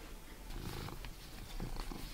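Domestic cat purring, a faint low rumble while it is stroked on the head.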